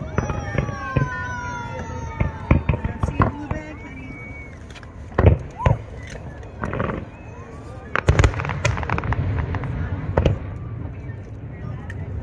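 Aerial fireworks bursting overhead: a run of sharp bangs and pops, the loudest about five seconds in and again about eight seconds in.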